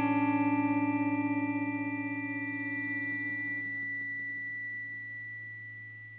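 Music: an effects-laden electric guitar chord over a held low bass note rings out, its sound pulsing rapidly at first and slowly dying away.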